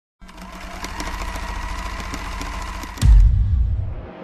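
Sound-designed record-label intro: a steady rattling, buzzing mechanical drone with a faint hum. About three seconds in it is cut off by a loud, deep boom that fades away.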